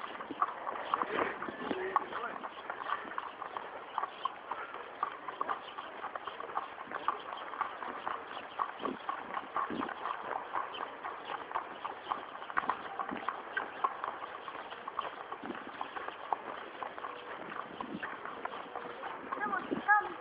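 A ridden horse's hooves clip-clopping on a concrete path: a steady run of sharp, irregular hoof strikes, several a second.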